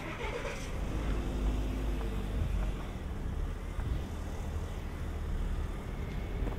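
A motor vehicle's engine running unseen nearby: a steady low rumble with a faint hum above it. A short falling sound comes right at the start.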